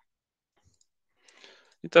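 Near silence, then a faint short noise and a man's voice starting to speak near the end.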